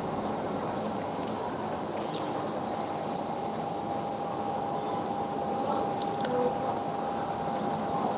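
Steady background hum of the room, with a faint steady tone coming in about two seconds in. A couple of faint clicks as a steel watch bracelet is handled.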